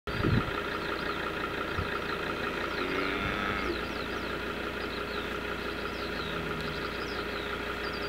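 Steady hum of an idling engine, with short, high, falling chirps scattered over it.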